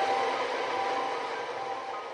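Relaxing piano music fading out, a few held notes ringing over a steady hiss.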